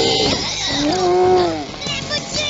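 An animated cartoon character's long, wavering cry that bends up and then falls away, over background music.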